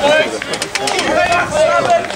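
Men's voices shouting "well done" over and over, several voices overlapping.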